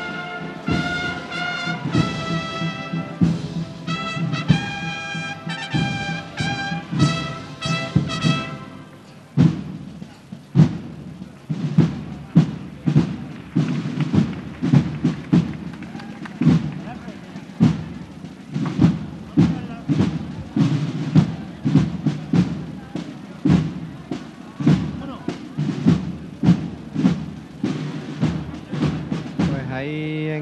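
Processional brass band playing a Holy Week march: the brass melody ends about nine seconds in, and from then on only the drums carry on, beating the march.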